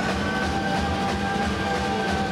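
Live rock band playing, with the lead singer holding one long sung note over guitar, bass and drums.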